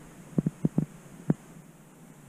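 About five short thumps in the first second and a half, over a low steady hum.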